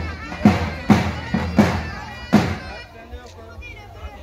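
Davul-and-zurna style music: heavy, irregular bass-drum strikes under a shrill reed pipe. It fades out about two and a half seconds in, leaving a murmur of voices.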